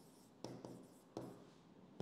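Faint taps and scratches of a pen writing on an interactive touchscreen board, with short strokes about half a second in and again just after a second.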